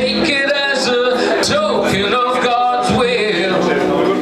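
Male voice singing a folk song live, drawing out the word "take", over a strummed guitar.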